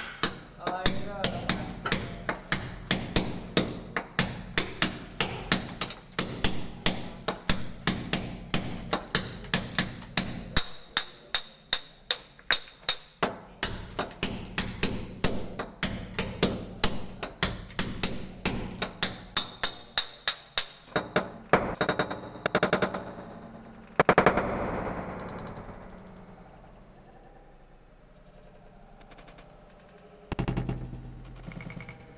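Rhythmic hammer-and-chisel blows chipping into a plastered wall, sharp strikes at about two to three a second kept up as a beat, thinning out and stopping a few seconds before the end after one last loud strike.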